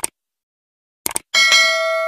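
Subscribe-button sound effect: a mouse click, then a quick double click about a second in, followed by a notification bell ding that rings on and slowly fades.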